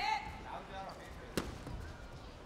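A taekwondo fighter's shout as he kicks, tailing off at the start. About a second and a half in comes a single sharp thud on the mat or body protector, with a hall murmur underneath.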